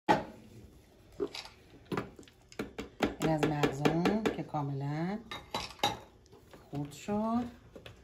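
A food processor being taken apart after chopping nuts: a sharp plastic clack at the start, then scattered plastic clicks and knocks as the lid comes off and the chopping blade is lifted out of the bowl. A voice is heard briefly in the middle and near the end.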